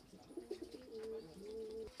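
A faint, low-pitched bird call that wavers a little in pitch and lasts about a second and a half.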